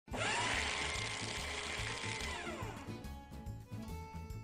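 A loud motor-like whir that starts abruptly, rises quickly in pitch, holds steady, then winds down in pitch about two and a half seconds in. It plays over music with a steady low beat.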